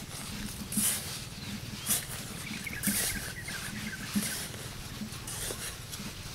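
Machete blade chopping and scraping into dry, sandy soil while digging a planting hole, a gritty stroke about once a second.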